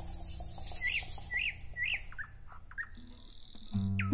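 Small songbird chirping: three arched whistled notes about half a second apart, then a few shorter falling chirps, over a fading music bed. A brief hiss follows, and music comes back in near the end.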